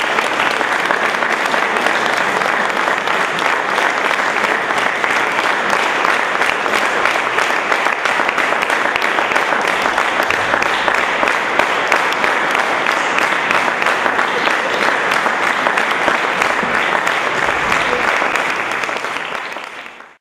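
Audience applauding, a dense steady clapping that tapers off near the end.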